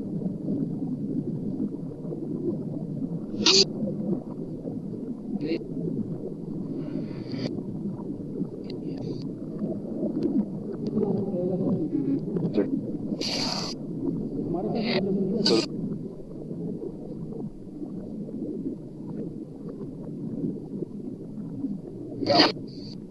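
Reversed and remixed fragments of speech forming a continuous garbled murmur, from a necrophonic sound bank used for spirit-communication (ITC) sessions. Short sharp hisses break through now and then, the strongest about three and a half seconds in and twice more near the middle.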